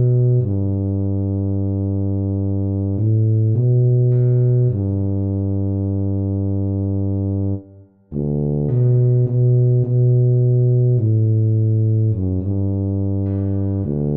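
Tuba playing a slow melody in long held low notes. After a short break near the middle it goes on in shorter notes.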